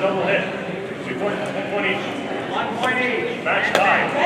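Indistinct chatter of several voices in a large gymnasium hall, with a few sharp clicks or knocks.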